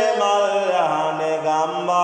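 A man chanting Sinhala devotional verse (kol mura kavi) in a slow, drawn-out melodic voice. Long held notes slide up and down between pitches.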